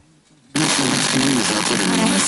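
A Tivoli Audio PAL+ FM radio's speaker going silent for about half a second while the set steps to a new frequency. It then comes back with a station's speech through a hissy, noisy signal.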